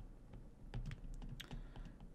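Faint, irregular light taps and clicks of a stylus writing by hand on a tablet surface, about five or six of them.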